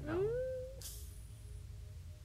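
A woman's voice drawing out a word with a rising pitch that levels off and holds, followed by a brief breathy hiss.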